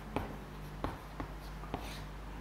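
Chalk writing on a blackboard: a few short, sharp taps and scratches at uneven intervals as letters are written, over a steady low hum.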